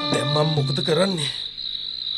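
Steady, high-pitched chirring of crickets as a night ambience. A voice is briefly heard in the first second or so.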